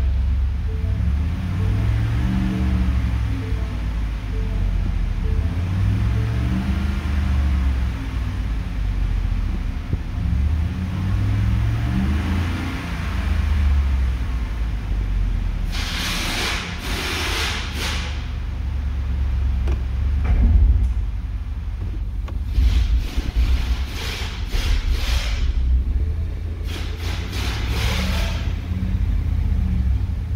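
Ford F-350's 6.2-litre gasoline V8 running in neutral and being revved, its pitch rising and falling back several times, with louder rough stretches in the second half.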